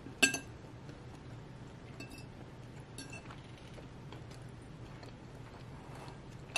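Fork clinking against dishware during a meal. There is one sharp, ringing clink just after the start, then two fainter clinks about two and three seconds in.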